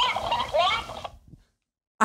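Plush mimicking cactus toy repeating a spoken phrase back in a high-pitched, sped-up voice, which stops about a second in.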